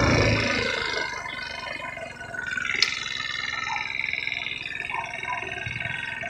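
A 150cc GY6 scooter's single-cylinder four-stroke engine dropping back as the rider slows, then running low and steady near idle. A single sharp click about three seconds in.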